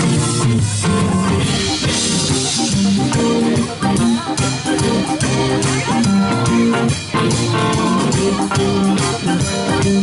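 Live band playing a funk instrumental with a steady beat: electric bass, drum kit, electric guitar, keyboards and trumpet.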